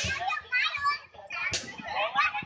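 Children in a crowd shouting and chattering in high voices, with a couple of sharp clicks or claps.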